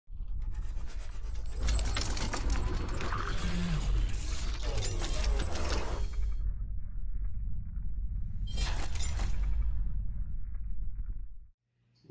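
Cinematic logo-intro sound design: a deep steady bass rumble under dense metallic clicking and clattering for the first six seconds, a second swelling burst of noise about nine seconds in, then it cuts off abruptly shortly before the end.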